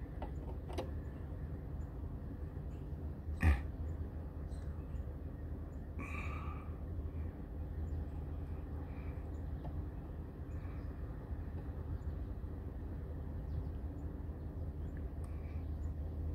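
Car engine idling: a steady low rumble, with one sharp click about three and a half seconds in.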